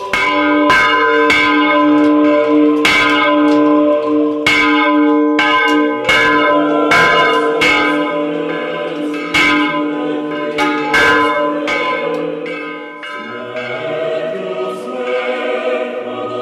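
Church bells rung by hand from the bell tower by a ringer pulling a rope: a rapid, uneven run of loud strikes over the held hum of the big bell. The ringing stops about three-quarters of the way through and choir singing carries on.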